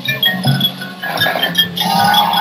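Marching band music: short struck mallet notes from a marimba ring out over held low notes, and the full band comes in louder near the end.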